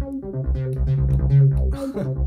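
Roland VariOS playing its TB-303 bass line emulation: a sequenced acid-style synth bass pattern of short, repeating notes.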